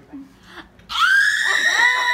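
A young woman's loud, high-pitched scream breaking out about a second in, sweeping up in pitch and then held, from the burning heat of a spicy candy kept in her mouth.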